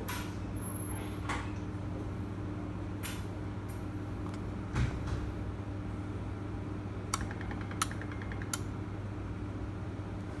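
Steady low hum with a few faint clicks and ticks, starting as buttons are pressed on a Nice Robus sliding-gate motor's control unit to start its BlueBUS device search.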